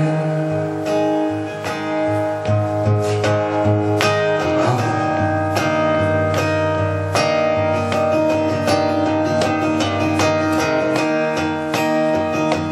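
Acoustic guitar strummed and picked in an instrumental stretch of a song, with no singing.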